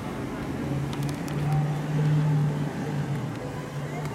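A car engine running steadily, growing louder for a second or so in the middle.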